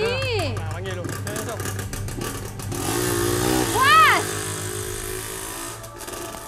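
Small motorcycle engine running, then revving sharply about four seconds in as it pulls away.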